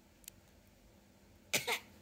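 Baby giving a short cough, two quick bursts close together near the end, after a faint click about a quarter second in.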